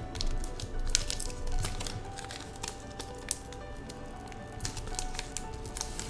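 Soft background music, with the crinkling of a foil Pokémon booster-pack wrapper being handled in the hands.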